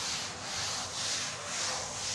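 A blackboard duster being rubbed over a chalkboard to erase it, a scratchy swishing in repeated back-and-forth strokes about twice a second.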